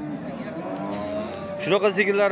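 Cattle mooing: one long call lasting about a second and a half.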